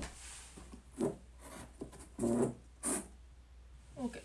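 A few short rubbing and scraping noises close to the microphone, as objects on a shelf are handled, in about four separate strokes.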